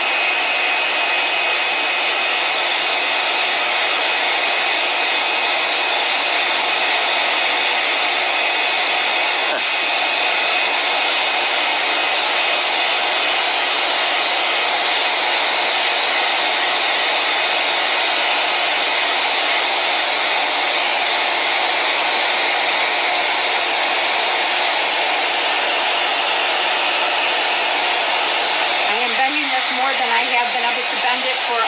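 iTeraCare THz health blower wand running, its fan blowing a steady rush of air with no change in speed, and a thin high whine over it in the first third.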